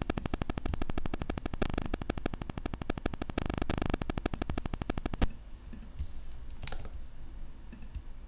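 Rapid, evenly spaced clicking from computer work, about ten clicks a second, that stops abruptly with a sharp click about five seconds in. Then it is quieter, with one more click near seven seconds.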